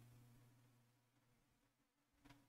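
Near silence: room tone with a faint low hum that fades out about half a second in.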